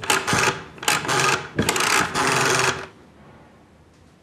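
Old desk telephone being worked to place a call: four short mechanical whirring spins in quick succession, then it falls quiet.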